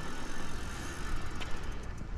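Low rumble of wind on the microphone with faint tyre and road noise from an electric bike rolling slowly, and a faint click about a second and a half in.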